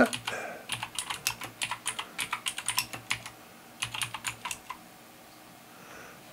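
Computer keyboard typing: a quick run of keystrokes for about three seconds, a brief pause, then a shorter burst that stops a little before five seconds in.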